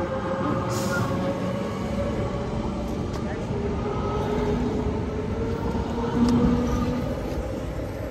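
GVB S1/S2 sneltram (light-rail train) pulling away past the platform: an electric traction whine of several tones that slowly shift in pitch, over the rumble of wheels on rail.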